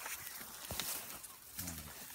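Faint rustling and light crackling of dry phragmites reed stalks and a nylon down jacket as a person moves among the reeds. Near the end comes a short low hum from a voice.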